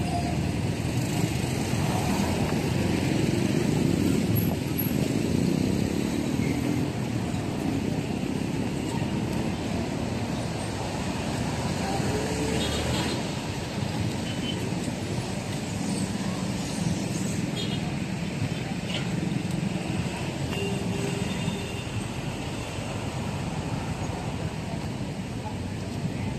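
Steady street traffic: motorcycles and other motor vehicles passing, a continuous hum of engines and tyres.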